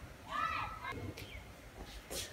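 A child's voice, one short high-pitched utterance about a quarter of a second in, followed by a couple of faint clicks.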